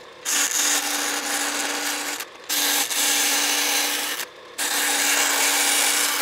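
Vertical bandsaw cutting a 1.6 mm (16-gauge) steel hinge blank. There are three spells of cutting noise, each a couple of seconds long, with brief pauses between them, over the saw's steady running hum.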